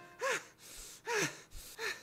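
A cartoon character's voice from the show's soundtrack panting: three short, breathy vocal gasps, the first right at the start, the others about a second in and near the end, as the music sting before them fades out.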